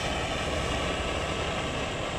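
Steady hissing roar of a hand-held propane torch flame heating the rusted outer sleeve of a seized PTO shaft, to expand the metal and break the rust free.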